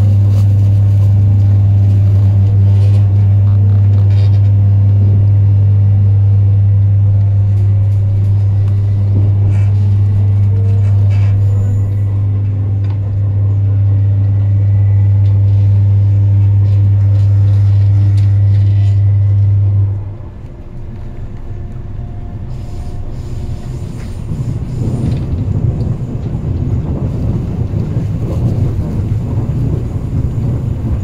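On board a Metro Cammell electric multiple unit train on the move: a loud, steady electrical hum with fainter motor whines shifting in pitch above it. About two-thirds of the way through, the hum cuts off suddenly, leaving the rumble of the wheels on the track.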